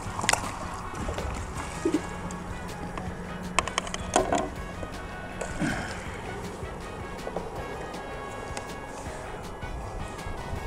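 Background music, with a few sharp knocks and clicks from gear being handled against the boat, the loudest about a third of a second in and around four seconds in.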